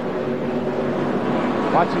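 A field of NASCAR stock cars running at speed, their V8 engines making a steady, level drone of several held tones.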